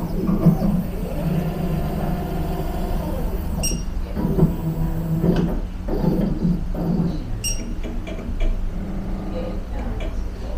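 Topcon TRK-1P automated refractor/tonometer running during its measurement of the eye: a steady machine hum and whir that swells and fades several times. Two short high beeps come through, the first about three and a half seconds in and the second about four seconds later.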